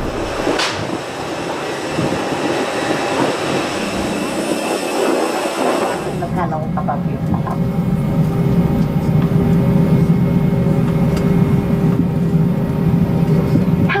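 Hissing road-vehicle cabin noise with faint voices. About six seconds in, this cuts to the steady low hum of an Airbus A320's cabin, with a steady tone above it, as the airliner taxis.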